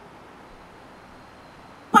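A short pause in a man's talk: a faint, steady background hiss with no distinct sound in it. His voice comes back loudly near the end.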